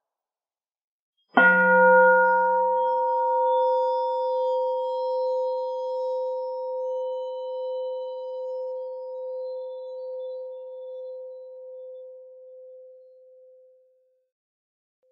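Buddhist bowl bell struck once with a wooden striker about a second and a half in, then a clear ringing tone with higher overtones that wavers slowly as it fades over about twelve seconds.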